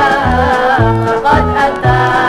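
Gambus orchestra music played from a 33⅓ rpm vinyl record: an instrumental passage with a wavering lead melody over a steady, repeating bass line.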